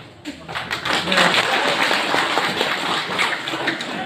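A crowd clapping: a dense patter of many hand claps that starts about a third of a second in and grows fuller about a second in.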